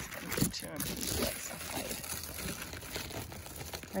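Rustling and crinkling of large melon leaves brushing against the phone as it is pushed through the vines.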